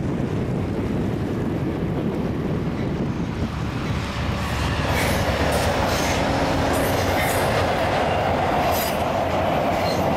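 Amtrak passenger train with a diesel locomotive crossing a steel railway bridge, starting as a low rumble. From about halfway through, the wheels clack over the rail joints with a steady high ring as the locomotive and Talgo cars pass close by.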